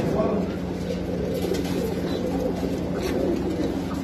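Domestic pigeons cooing, low wavering coos over a steady low hum.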